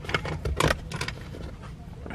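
Small metal driver bits and sockets clicking and clinking in a plastic bit holder as a hand rummages through it, a quick run of sharp clinks.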